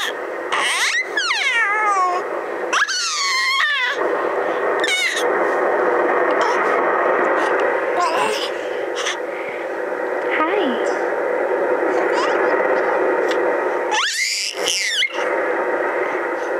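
A four-month-old baby's high-pitched, bird-like squawks and squeals in short bursts: near the start, around three seconds in, about five seconds in, and again near the end. A steady background noise runs underneath.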